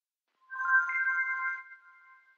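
A short electronic transition chime starting about half a second in: a few clear notes come in one after another, stepping up into a held chord that fades out.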